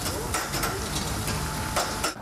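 Steady crackling hiss as firefighters hose down a building fire.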